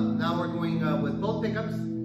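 A hollow-body electric guitar through its amplifier with reverb holds a steady low sustained tone, with a man's voice talking briefly over it.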